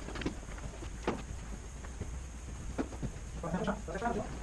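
Footsteps on a concrete tunnel floor: a few scattered steps, about a third of a second in, at about one second and around three seconds, over a low steady hum.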